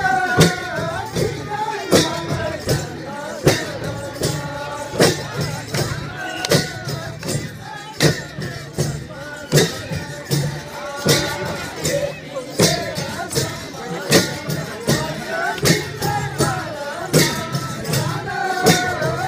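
Live Nepali folk music for a Kauda dance: voices singing over a steady beat of hand-held percussion with bright, cymbal-like strikes about every three quarters of a second.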